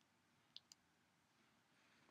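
Near silence with two faint, short clicks about half a second in, a fraction of a second apart.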